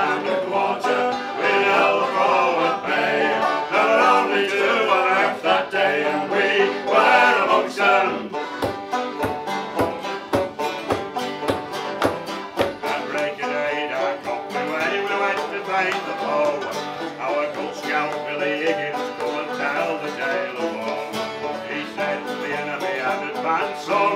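Folk band playing an instrumental passage: banjo, accordion and a mandolin-family instrument. From about a third of the way in, a bodhrán joins with a steady beat.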